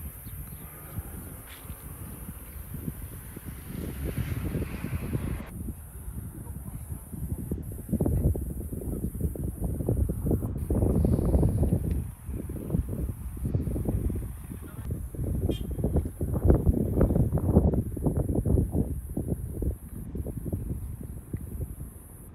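Wind buffeting an outdoor microphone, a gusty low rumble that rises and falls in strength, over a faint steady high hiss.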